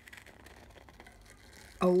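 Faint snipping of scissors cutting through black paper, with light paper rustling as the sheet is turned. A voice starts near the end.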